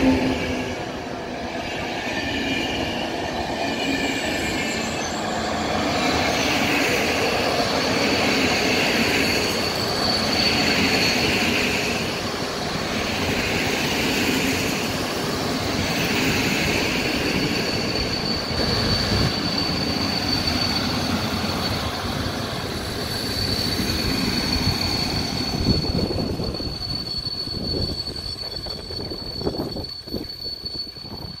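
Passenger coaches of an InterCity train hauled by an EP09 electric locomotive rolling along the track, wheels rumbling and clattering, with a high, thin steady squeal from the wheels. The sound dies down over the last few seconds.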